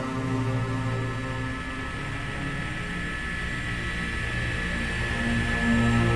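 Background music of long, sustained notes, with a high held tone growing louder in the second half.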